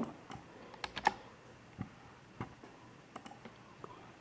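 Scattered keystrokes on a computer keyboard: single taps and short runs of clicks at an uneven pace, a few per second, with a cluster about a second in.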